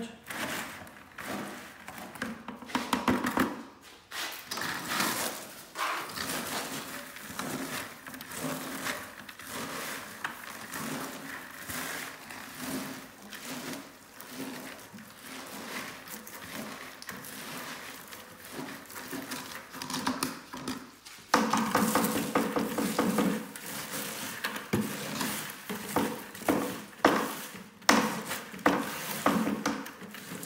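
Spoons stirring a sticky popcorn, peanut-butter and marshmallow bait mix in plastic pails: repeated scraping and crunching, with irregular knocks of the spoons against the pail sides.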